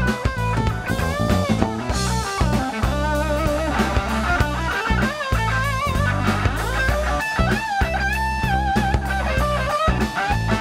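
Live blues trio playing an instrumental break: an electric guitar plays lead lines with string bends and vibrato over electric bass and a drum kit keeping a steady groove.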